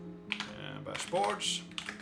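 Typing on a computer keyboard: a scattering of quick keystrokes as short shell commands are entered.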